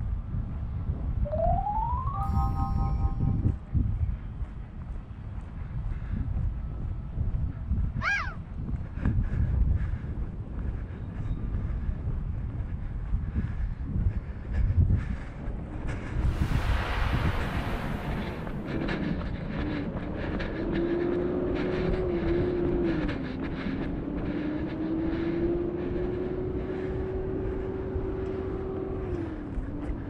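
Wind rumbling on the microphone of a camera carried on foot outdoors. A couple of short whistle-like tones come early, a brief hiss about midway, and a steady, slightly wavering hum through the second half.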